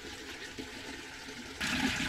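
Creek water rushing and splashing through a wooden fish trap box. About one and a half seconds in it turns suddenly much louder, a churning gush as water pours from a corrugated plastic pipe into the box.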